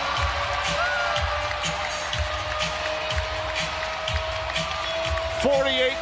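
Arena music with a steady beat, about two a second, and one long held note, over the noise of a cheering home crowd at the final buzzer of a basketball game.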